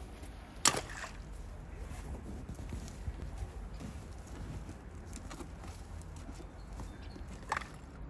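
A grappling hook on a rope lands in shallow canal water beside a sunken bicycle wheel, a short sharp splash near the end, over a steady low outdoor rumble. A louder sharp knock comes about a second in.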